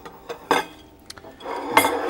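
Glass dessert dishes clinking as they are set down on a table: a couple of light clinks, then louder ones with a short glassy ring near the end.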